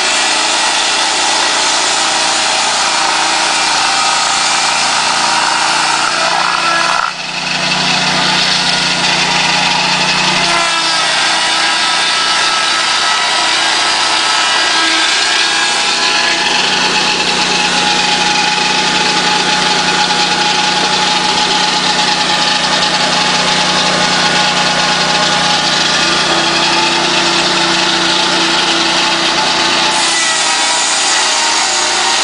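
Small petrol engine of a swing blade sawmill running steadily and driving the circular saw blade, with a brief drop in level about seven seconds in.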